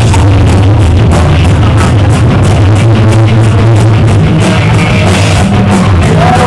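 Live rock band playing loud without vocals: electric guitars, bass and a drum kit keeping a steady beat.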